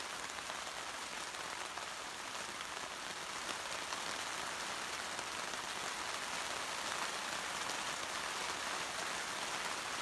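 Heavy rain falling steadily, an even hiss with no breaks.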